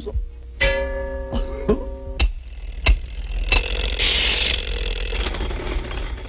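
Cartoon score and sound effects: a run of sharp clicks and short held notes, then a brief hiss about four seconds in.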